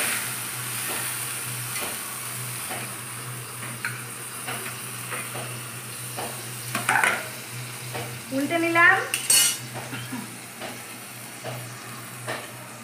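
Banana-leaf parcels of lote fish (Bombay duck) sizzling on a hot flat metal pan over a gas burner, with scattered clicks and scrapes of metal tongs moving them. A brief rising squeak about nine seconds in is the loudest moment.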